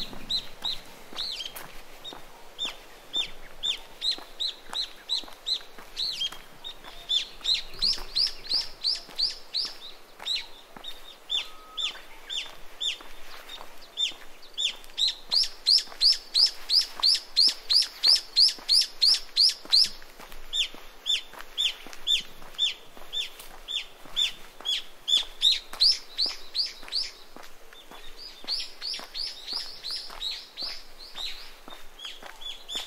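A bird calling in a long, fast run of short, high notes, about three a second, each falling in pitch, with brief pauses and loudest in the middle stretch.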